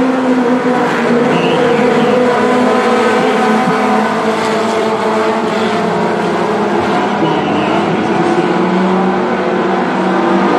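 A pack of dirt-track race cars running together at racing speed, several engines blending into one steady, layered note with no single car standing out.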